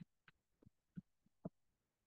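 Faint stylus taps on a pen tablet during handwriting: about five soft ticks in the first second and a half, then near silence.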